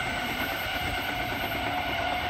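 V-set electric intercity train running on the line, a steady rumble with several steady high whining tones.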